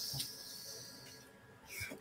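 A person breathing out audibly while pondering: a soft hiss that fades over about a second. A short breath in comes near the end.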